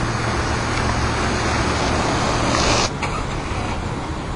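Street traffic: steady noise of a passing car's engine and tyres. The hiss grows louder toward three seconds in, then cuts off suddenly.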